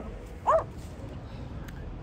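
A small dog gives a single short, high yip about half a second in, over a low steady background rumble.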